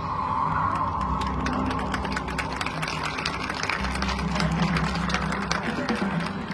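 Marching band playing a held, sustained chord with low bass notes, a higher held note fading out over the first couple of seconds, and rapid, irregular ticking percussion running over it.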